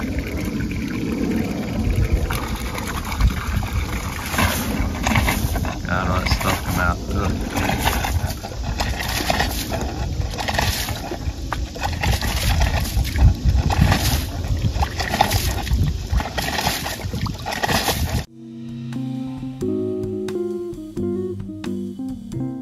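Seawater and air being flushed through a marine air conditioner's overboard discharge, spurting out of the hull fitting and splashing into the water in repeated surges over a heavy low rumble. Guitar music starts abruptly near the end.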